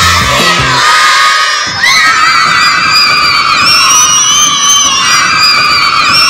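A group of young children cheering and shrieking together, high-pitched and loud, as the song's backing music cuts off about a second in; from about two seconds in the shrieks are drawn out and sustained.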